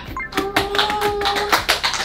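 A quick run of sharp claps or taps, with a steady held tone sounding under the first part of them.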